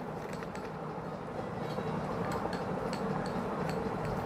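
A small plastic spoon stirring a wet paste in a glass bowl: soft scraping with faint scattered clicks against the glass, over a steady low background hum.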